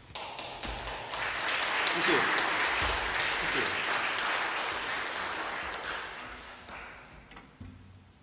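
Audience applauding in a hall: the clapping starts suddenly, swells over the first two seconds, then slowly dies away near the end.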